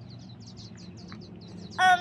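A bird calling in a quick run of short, high chirps, about eight a second, that stops about a second and a half in.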